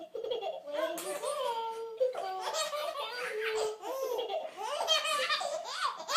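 Baby laughing in a long, nearly unbroken run of high-pitched peals.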